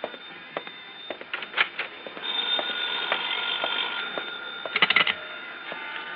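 Telephone bell ringing steadily for a couple of seconds, starting about two seconds in and breaking off into a short clatter, with a few scattered knocks before it.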